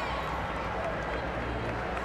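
Indistinct voices and general murmur in a large arena, over a steady low rumble of room noise.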